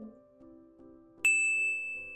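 A single bright ding chime about a second in, ringing on and fading slowly: a slide-transition sound effect, over soft background music.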